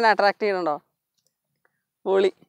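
A man's voice for under a second, then complete silence.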